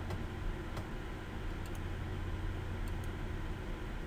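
Room tone with a steady low hum and a few faint, scattered computer mouse clicks.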